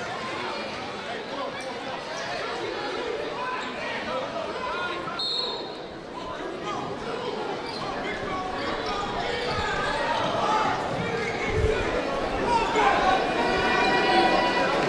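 Basketball bouncing on a hardwood gym floor, under the chatter of a crowd of spectators and players, which grows louder toward the end.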